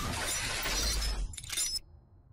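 Glass-shattering sound effect from an animated logo intro: a crash of breaking glass that dies away over about a second and a half, with bright tinkling near the end.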